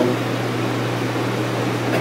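Steady room hum and hiss with one constant low tone, unchanging throughout.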